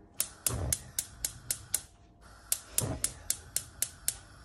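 Gas stove's spark igniter clicking about four times a second, in two runs with a short pause in the middle, as the burner under the frying pan of oil is lit.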